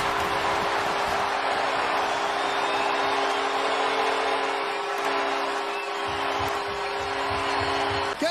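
Hockey arena goal horn sounding one long held chord over a cheering crowd, the signal of a home-team goal.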